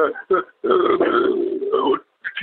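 A man's voice: a few clipped syllables, then a long hesitation sound held at one steady pitch for over a second as he searches for words.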